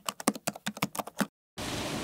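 Rapid computer-keyboard typing clicks, about ten a second, which stop suddenly a little over a second in. After a brief silence a steady rushing noise comes in.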